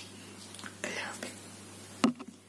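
A woman's soft breathy whisper about a second in, over a low steady electrical hum.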